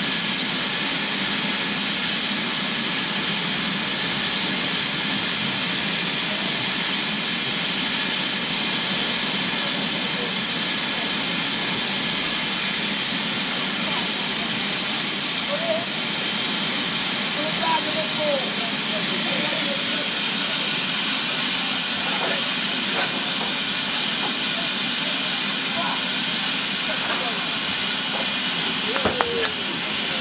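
BR Standard Class 4MT 2-6-0 steam locomotive 76079 standing with steam hissing steadily and loudly.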